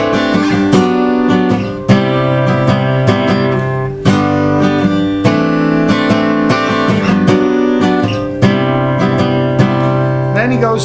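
Steel-string acoustic guitar capoed at the third fret, playing ringing chords with sharp attacks. The chord shape steps up the neck through the chorus progression of E, F sharp, G sharp and A, with the chords named relative to the capo.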